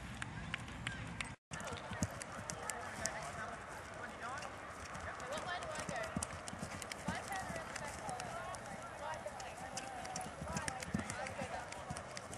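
Hoofbeats of a horse running on a grass arena, with people talking in the background. The sound cuts out briefly about a second and a half in.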